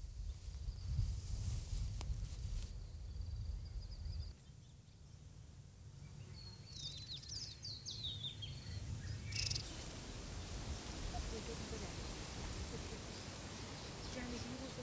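Outdoor rural ambience: low wind rumble with a steady high-pitched whine for the first four seconds, then a bird calling a quick run of short falling chirps midway through, followed by an even hiss.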